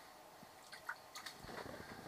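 Faint scattered clicks and small wet squishes of a caught fish and hook being handled to get the bait back.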